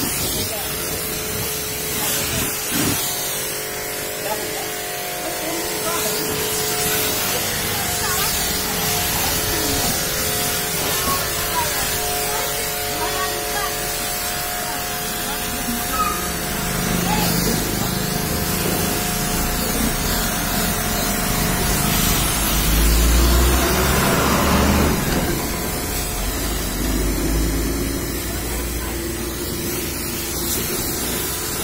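Pressure washer spraying water onto a vehicle's body panels and wheel: a steady hiss of high-pressure spray, with a deeper, louder stretch a little past halfway.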